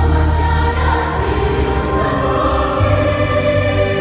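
Large church choir singing a Vietnamese Catholic hymn in sustained, held chords over a steady low bass note that shifts pitch near the end.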